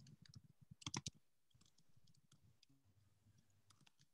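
Faint computer keyboard typing: a scatter of soft key clicks over near silence, the loudest pair about a second in.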